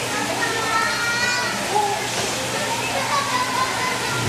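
Several voices overlapping, with music in the background.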